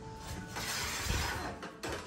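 Aluminium T-track rail scraping and clinking against a wooden countertop and the miter saw's metal base for about a second, ending with a short click.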